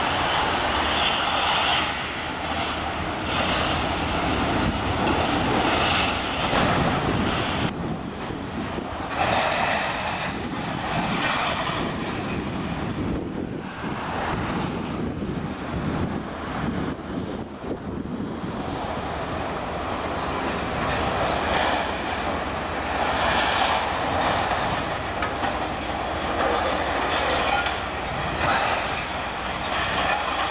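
Liebherr scrap-handling machines working a scrap metal pile: diesel engines running, with the rattle and scrape of scrap steel being grabbed and shifted, swelling and easing every few seconds.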